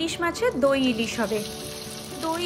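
A turmeric-marinated fish steak slid into hot oil in a wok, the oil sizzling as it starts to fry; the sizzle picks up about half a second in.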